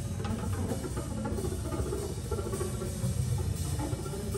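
Live trio music: electric guitar, upright double bass and drum kit playing together, with the drums prominent.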